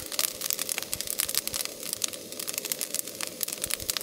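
Udon noodles and vegetables sizzling and crackling in a wok as they fry and crisp up.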